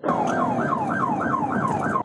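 Police car siren in fast yelp mode, a rapid rising-and-falling wail repeating about three to four times a second, heard from inside the moving cruiser over steady road noise.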